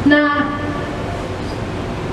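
A woman's voice says one short word through a microphone. A steady hiss with a low rumble follows for the rest of the moment.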